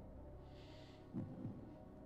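Quiet studio room tone: a steady low hum, with a brief soft hiss about half a second in and a short low-pitched sound just after a second.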